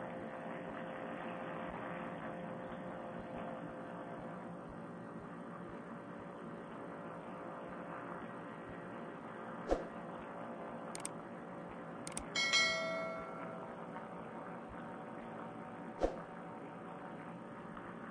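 Steady drone of a paratrike's motor in flight. About ten seconds in come a couple of sharp clicks, then a short bell chime, a subscribe-button sound effect; a last click follows near the end.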